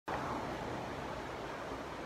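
Ocean surf washing on a beach, a steady hiss of noise with a low uneven rumble beneath it.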